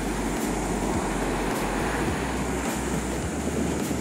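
Surf breaking and washing up a sandy beach, a steady rush of sea noise, with wind rumbling on the microphone.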